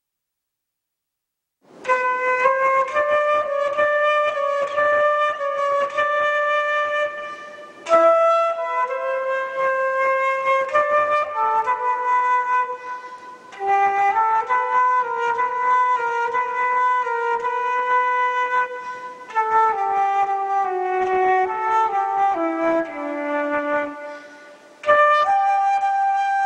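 Concert flute playing a slow melody, starting about two seconds in. It moves in phrases of five or six seconds, with brief breaths between them, and the fourth phrase steps down low before the next begins.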